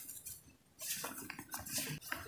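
Hands squeezing and crumbling powder-coated gym chalk: soft crunching with a fine powdery crackle. It eases off briefly and picks up again just under a second in.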